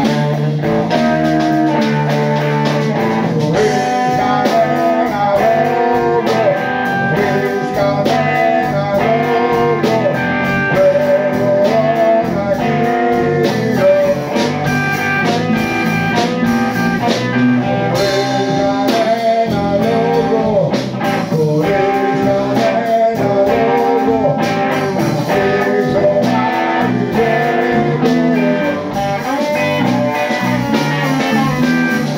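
Live band jam: an electric guitar plays shifting melodic lines over bass guitar and a drum kit.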